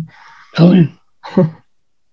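A woman's short, breathy laugh: an exhale, then two brief voiced bursts.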